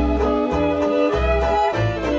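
Background music score: a lively tune of changing notes over a steady bass beat.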